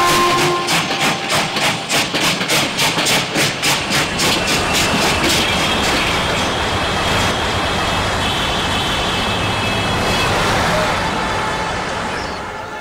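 Train sound effect played through a theatre's sound system: a fast, even clickety-clack of rail wheels, about four strokes a second, for the first few seconds, then a steady rushing run with a high squealing tone over it that fades near the end.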